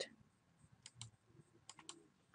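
Near silence with a few faint clicks from a computer mouse and keyboard, in two small groups about a second in and near the end.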